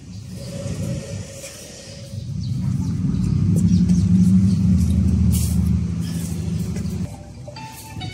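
A low mechanical rumble with a steady hum swells from a few seconds in, is loudest around the middle, and drops off sharply about a second before the end.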